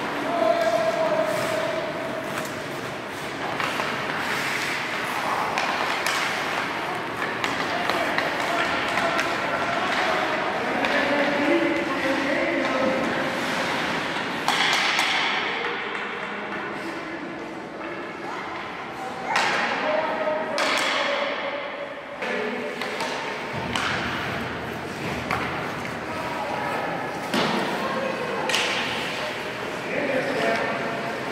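Echoing ice-rink sounds of hockey practice: hockey sticks and pucks clacking and pucks banging off the boards in scattered sharp knocks with a ringing tail, under indistinct voices calling out across the arena.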